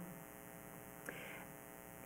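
Faint, steady electrical mains hum in a pause between speech, with a soft click about a second in.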